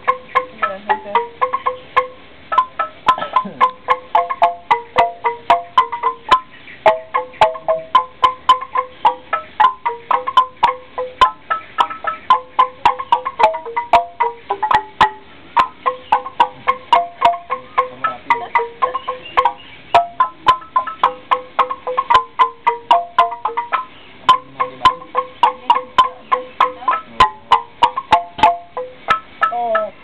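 Balinese gamelan bamboo xylophones struck with mallets by two players. They play a fast, even, repeating pattern of several notes a second that keeps coming back to the same few pitches.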